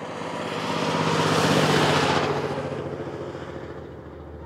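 A road vehicle driving past on a highway: it grows louder, is loudest about two seconds in, then fades away.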